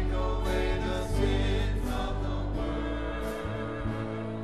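Choir singing a slow hymn with sustained low accompanying notes held beneath the voices; the low notes drop away near the end.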